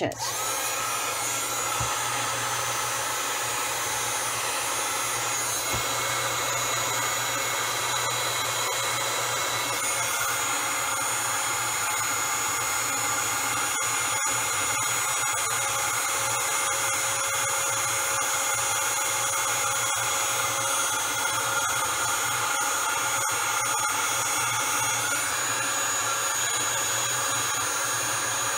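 Embossing heat tool running steadily, a constant blowing whir with a thin high whine, held under a card to melt clear and silver embossing powder.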